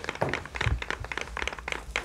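Pencil tips tip-tapping on paper over desktops as several pupils trace dotted lines, a quick, irregular patter of light taps that sounds like rain.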